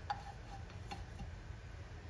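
Wooden spoon knocking against a non-stick frying pan as naan is turned: one sharp tap just after the start, then two lighter taps around the middle. A steady low rumble runs underneath.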